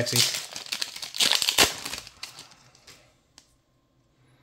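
A Magic: The Gathering booster pack's foil wrapper being torn open and crinkled by hand, loudest about a second in, the crinkling dying away by about three seconds, followed by one small click near the end.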